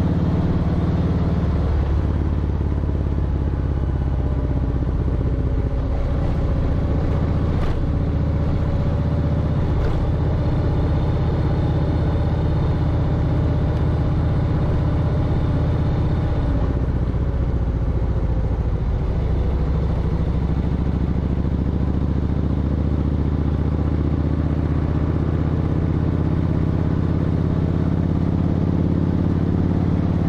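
V-twin motorcycle engine cruising at a steady throttle, heard from the riding bike with road noise underneath; the engine note shifts slightly in pitch now and then.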